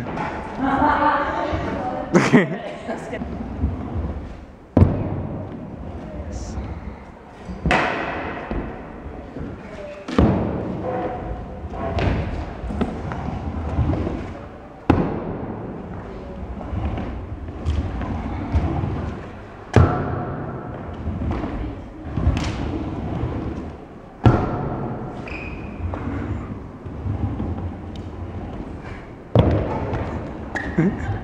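Stunt scooter repeatedly landing flat tricks on a concrete floor: about ten sharp thuds of the deck and wheels slapping down, a few seconds apart, each followed by the rumble of the wheels rolling away.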